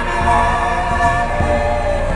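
Three voices sing a traditional north Greenlandic song in close harmony, holding long notes. Two low thumps sound underneath.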